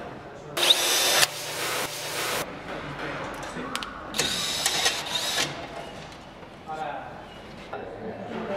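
Cordless Makita drill-driver whining in two short runs, about half a second in and about four seconds in, driving a screw into a car's wheel hub.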